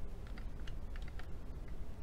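Scattered small, light clicks and taps of a hand handling a diecast and plastic 1:18 scale model car, over a low rumble of handling noise.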